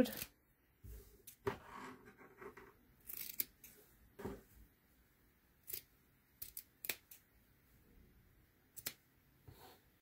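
Scissors cutting through cotton lining fabric: a scattered series of quiet, short snips and blade clicks, with soft rustling of the fabric between cuts.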